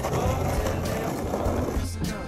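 Skateboard wheels rolling on rough asphalt: a steady rolling rumble, with music underneath.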